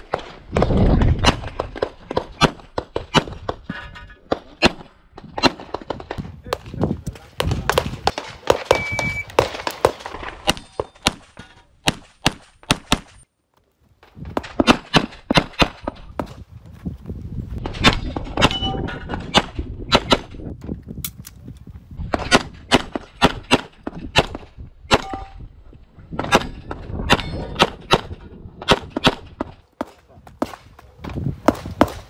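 Pistol shots fired fast in quick pairs and strings, with short pauses between clusters and a brief break about halfway through. A few short metallic rings sound among the shots.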